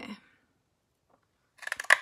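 Stampin' Up! Treasured Tag Pick a Punch pressed down through the end of a cardstock strip: a quick run of crisp clicks ending in one sharp snap near the end, as the blade cuts through the card.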